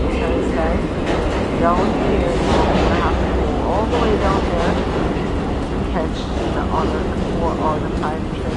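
Subway station din: a steady, loud low rumble, typical of a train running in the station below, with the voices of other people on the stairway heard through it.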